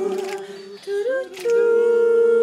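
Voices humming and singing long wordless notes a cappella; the sound dips about halfway through, slides briefly upward, then settles on a new long held note.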